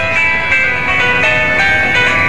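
Mobile phone ringtone playing an electronic melody of clear stepping notes, ringing with an incoming call.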